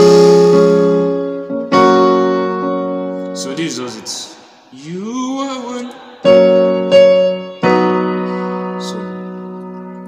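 Electronic keyboard on a piano voice playing chords in F-sharp major, each chord struck and left to ring and fade. Near the middle the playing pauses and a man's voice is heard briefly.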